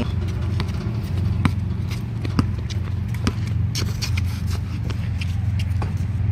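A basketball being dribbled on a hard outdoor court: sharp, irregular bounces about every half second, over a steady low rumble.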